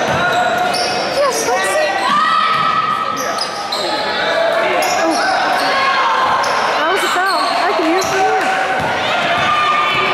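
Basketball game sounds in a gym: sneakers squeaking on the hardwood floor, a basketball bouncing, and players and spectators calling out, all echoing in the hall.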